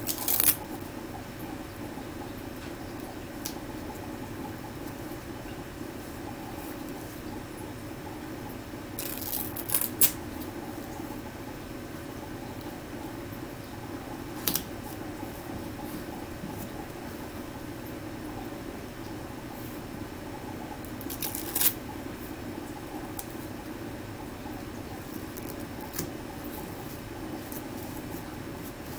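Brief rustles and crackles of adhesive tape being handled and pressed onto a gauze dressing: a handful of short bursts, several together about nine to ten seconds in. A steady low hum sits under them.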